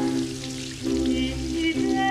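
Tap water running and splattering onto hands in a sink, a steady hiss, under held low music chords.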